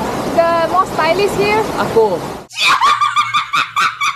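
Voices over the rush of a rocky stream, cut off suddenly about two and a half seconds in by a woman's high-pitched laughing fit in quick, repeated giggles.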